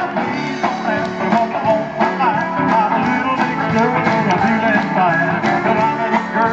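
Live rock-and-roll band playing, with electric guitar, bass guitar, drums and keyboard.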